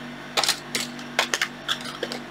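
Small parts and objects clinking and clacking on a desk as it is tidied: about half a dozen sharp, separate clicks spread over two seconds.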